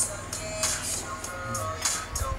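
Music playing for dance practice, with a steady beat: crisp high percussion hits over a low, sustained bass.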